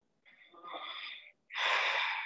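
A person breathing out heavily close to a microphone, two breaths, the second louder.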